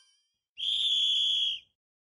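A whistle sound effect: one steady, high blast lasting about a second, signalling that the game's time is up.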